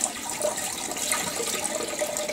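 Filthy water pouring in a steady stream from a carpet cleaner's dirty-water tank into a toilet bowl, splashing into the water in the bowl.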